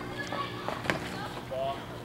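A baseball pitch popping into the catcher's mitt once, about a second in, over faint background voices.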